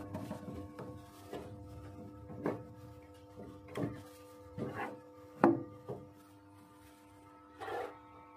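Handling noise from plugging in a power cable: several short knocks and some rubbing of the plug and cable, the loudest knock about five and a half seconds in.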